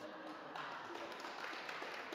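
Soft audience laughter and murmuring, a steady hiss of many small voices echoing in a stone church.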